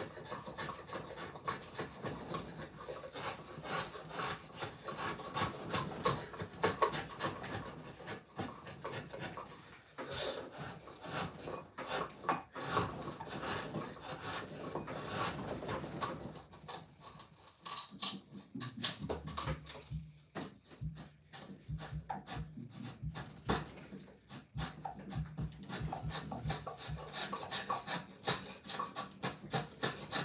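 Hand blade shaving a wooden axe handle, many short scraping strokes with brief pauses as curled shavings come off the grain.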